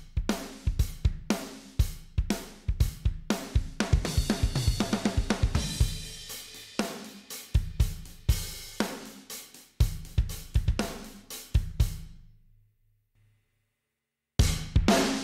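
Acoustic rock drum kit loop playing back: kick, snare, hi-hat and cymbal hits in a steady beat, with a cymbal wash in the middle. It stops about a second and a half before the end.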